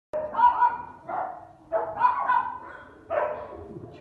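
Young Labrador retriever puppies barking and yelping in high-pitched voices, in three bouts: at the start, just before two seconds in, and about three seconds in.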